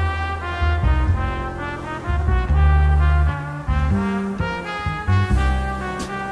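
Big band jazz instrumental: a brass section of trumpets and trombones plays held chords that change every second or so, over a low bass line.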